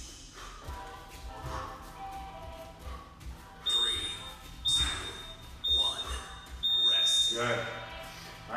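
Digital gym interval timer beeping the end of a round: three short high beeps about a second apart, then a longer final beep. Background music plays underneath.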